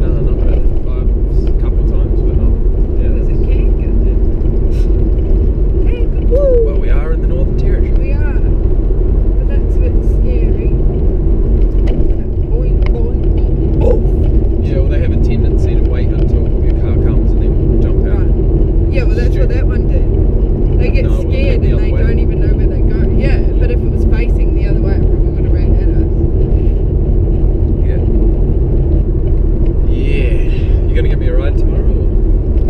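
Steady, loud low rumble of road noise inside a moving car, with faint, muffled voices that can't be made out.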